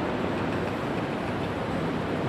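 Steady background hiss and low rumble of the recording's room or sound system, even and unchanging, with no distinct event.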